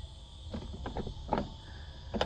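A few faint, scattered clicks and rubs of a hand feeling around a leather seat back and trim for a release catch, with the clearest knock about a second and a half in.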